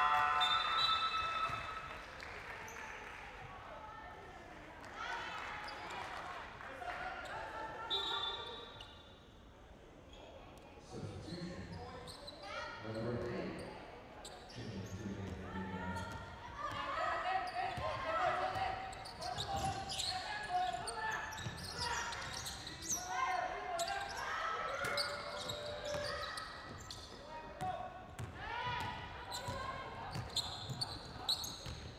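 Indoor basketball game: a basketball bouncing on the hardwood court, with players and spectators calling out in a large, echoing hall. It is loudest right at the start.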